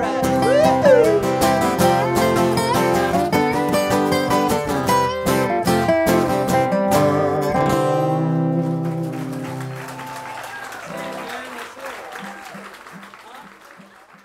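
Live acoustic guitar and resonator guitar playing the closing bars of a country-folk song. About eight seconds in, the playing stops on a final chord that rings on and fades away, with faint audience sound underneath.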